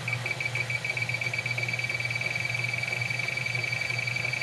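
Electronic refrigerant leak detector alarm beeping fast at one high pitch. The beeps speed up and run together into a nearly steady tone about halfway through as the reading climbs into the hundreds of ppm, the sign of a sizable refrigerant leak at the evaporator coil. A steady low hum runs underneath.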